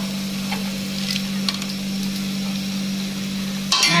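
Rice-flour and peanut batter (peyek) frying in hot oil in a wok, a steady sizzle, with a few faint clinks of a metal ladle and strainer. A constant low hum runs underneath.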